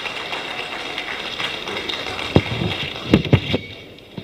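Audience applauding, dying away near the end, with a few sharp knocks about two and three seconds in.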